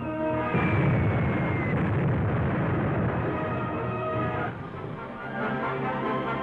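Dramatic film score with a shell explosion about half a second in: a loud, long, low boom that dies away after about four seconds while the music plays on.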